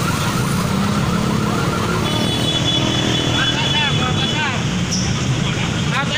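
Street traffic noise with motorcycle engines running and people's voices calling out. A steady high tone sounds for a couple of seconds from about two seconds in.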